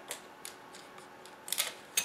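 Light metallic clicks and taps of thin aluminium brackets being handled and fitted together at a hinge, with a quick cluster of sharper clicks about one and a half seconds in.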